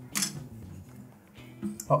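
A sharp click as the empty 120 film spool is fitted into the take-up chamber of a Yashica Mat twin-lens reflex camera, over soft background music.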